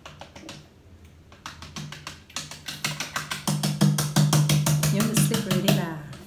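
Rapid, even percussive tapping, about eight strokes a second, beginning about two seconds in and growing louder, with a low sustained tone under it for the last few seconds; the tapping stops just before the end.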